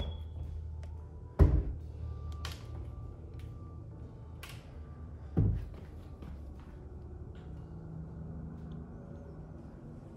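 Wooden kitchen cabinet doors being shut: two solid thumps about a second and a half and five and a half seconds in, with a few light clicks between them, over a low steady hum.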